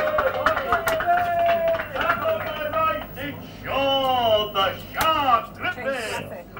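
Speech: voices talking, over a faint low steady hum.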